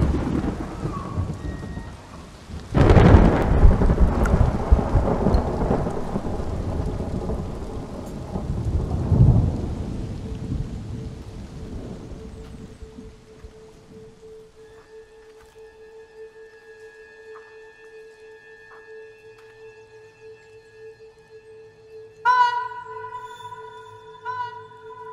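Two sudden peals of thunder, one at the start and another about three seconds in, each dying away in a long rolling rumble. As the rumble fades, a steady low drone and high held tones of eerie film music take over, and a clear sustained note comes in near the end.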